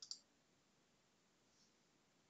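A faint computer mouse click at the very start, heard as two quick ticks.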